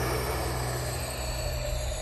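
A steady low rumbling drone under a hissing wash that thins out toward the end: a sustained sound from the film's soundtrack.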